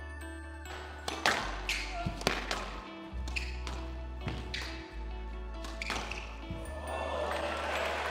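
Squash rally: the rubber ball cracking off rackets and the court walls in a string of sharp knocks, over background music with a deep, sustained bass. Applause starts to swell near the end.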